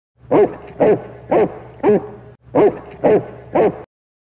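A dog barking seven times, in a run of four and then a run of three, about half a second apart, over a faint low hum.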